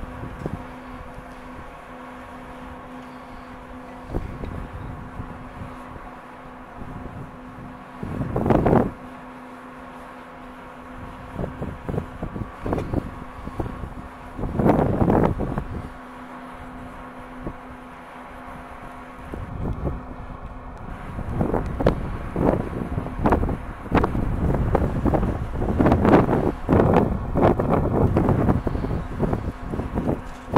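Wind buffeting the camera microphone in gusts: loud rumbling bursts about 9 and 15 seconds in, then almost continuous in the last third. Under the gusts runs a faint steady hum that stops about two-thirds of the way through.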